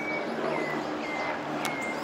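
Outdoor city-park ambience: a bird repeating a short high call about twice a second over a steady background of city noise, with a single click near the end.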